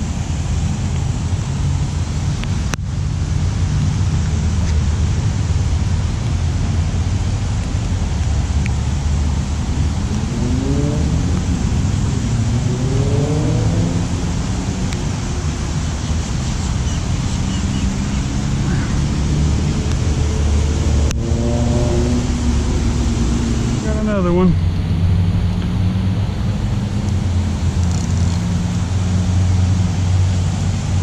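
Steady low rumble of road traffic, with a vehicle engine rising in pitch as it accelerates about ten seconds in and again about twenty seconds in.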